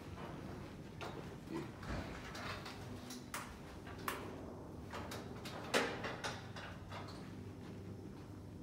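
Footsteps on a rubber gym floor, with a few scattered light knocks and clicks. The sharpest click comes a little before six seconds in.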